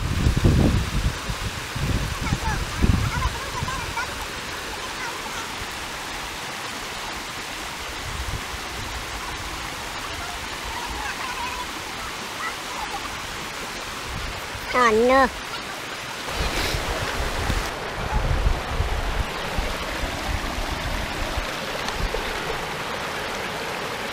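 Shallow, rocky river rushing steadily over stones, with bursts of low rumble from wind buffeting the microphone near the start and again later on.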